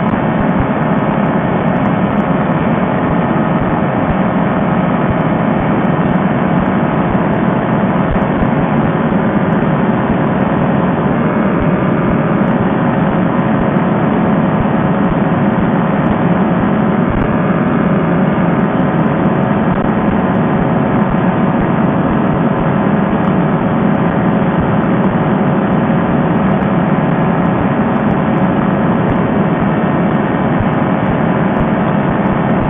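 Fresh Breeze Monster two-stroke paramotor engine and propeller running steadily at cruise power in flight, mixed with wind rush. The pitch and loudness hold constant throughout.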